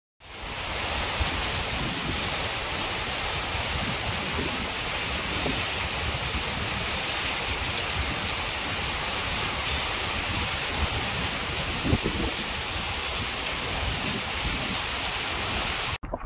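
Torrential hurricane rain pouring down in a steady, even hiss that fades in at the start.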